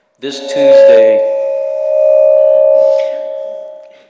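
A loud ringing tone at one steady pitch, with fainter higher tones over it. It starts suddenly, holds for about three seconds and fades out near the end, with a brief voice-like sound mixed in at the start.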